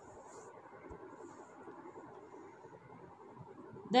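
Faint, steady room noise with no distinct sound in it.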